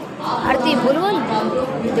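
Several people's voices talking over one another in a large hall.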